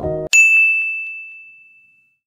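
A single bright ding, a chime sound effect that rings on one high note and fades away over about a second and a half. It follows the background music cutting off.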